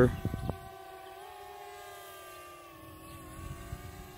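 DJI Spark quadcopter's propellers and motors whining steadily in flight, the pitch shifting slightly upward about a second in. A few light clicks near the start.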